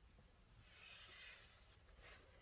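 Near silence: quiet room tone under a rock overhang, with a faint soft hiss swelling and fading around the middle.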